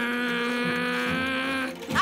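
One long, steady pitched note, voice-like, held for about a second and a half and fading away shortly before the end.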